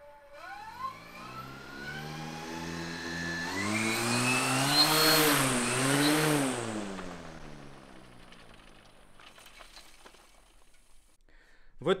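Coaxial pair of EA98 brushless electric motors driving 30-inch propellers on a propeller-pushed cart: a whine with a propeller buzz that rises in pitch as the motors spin up and the cart pulls away. It is loudest about five seconds in, then fades as the cart moves off into the distance.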